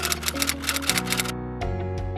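Typewriter sound effect clicking rapidly as on-screen title text types out letter by letter, over background music; the clicking stops just over a second in.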